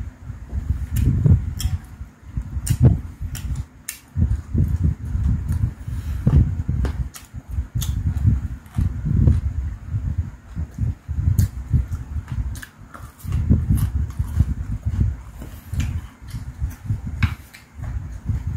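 Close-up chewing of food, an irregular run of low, wet mouth sounds, with sharp clicks of chopsticks against the dishes scattered among them.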